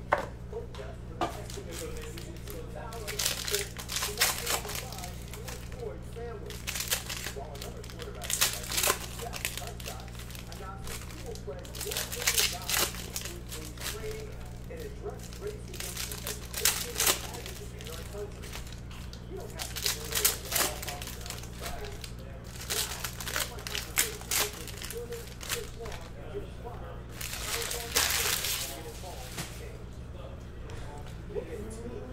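Foil trading-card pack wrappers being torn open and crinkled in short bursts every few seconds, as packs are ripped and the cards pulled out, over a steady low electrical hum.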